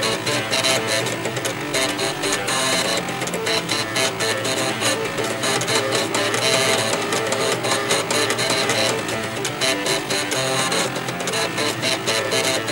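The head stepper motors of eight 3.5-inch floppy disk drives buzzing out a multi-part tune, each drive's pitch set by how fast its head is stepped. The tones are buzzy and continuous, with many notes sounding together.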